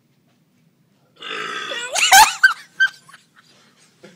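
A long, loud human burp. It begins about a second in, is loudest just after two seconds, and trails off in a few short bursts.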